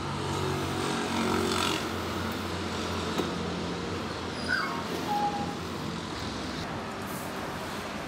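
Steady low hum of a road vehicle's engine running nearby, strongest in the first two seconds and then easing off, over continuous background traffic noise.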